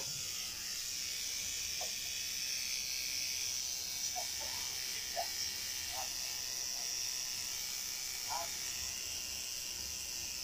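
Electric tattoo machine buzzing steadily under a constant high hiss, with a few short faint vocal sounds now and then.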